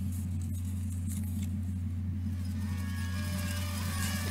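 A steady low hum with a few faint rustles of a paper slip being unfolded by hand; faint music starts to come in near the end.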